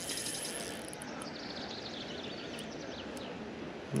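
Steady outdoor background noise with a faint bird singing in short, high, descending phrases through the middle. There is a brief faint run of rapid clicking in the first second.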